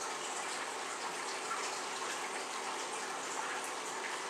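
A steady, even hiss of background noise with no other distinct sound.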